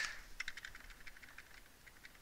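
Faint, quick clicks and taps from the computer drawing setup while the on-screen board is being erased, bunched in the first second and thinning out after.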